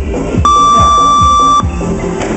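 A single long electronic beep from a gym interval timer, about a second long, steady in pitch and starting and stopping abruptly, over background music with a steady beat.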